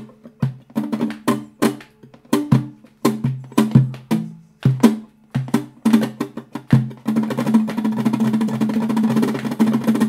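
Cutaway flamenco guitar played with sharp, percussive strummed chords, each stroke struck separately. About seven seconds in, the strokes merge into a fast, continuous roll of strumming.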